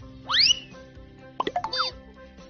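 Background music with two cartoon sound effects laid over it. The first is a quick rising whistle-like pop about a quarter second in. Near the end comes a rapid run of short chirps and falling blips.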